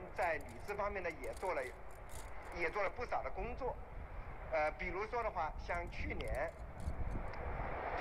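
Speech from an AM radio broadcast picked up by a crystal radio and heard through its earbud: thin and muffled, with nothing above the upper mids, over a steady hiss. A few small clicks from snap-together circuit pieces being handled.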